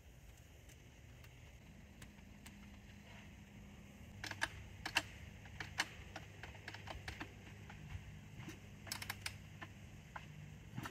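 Faint, irregular clicks and ticks from a Honda CR two-stroke dirt bike's kickstart lever being worked by hand. They come in short clusters from about four seconds in, and the engine does not fire.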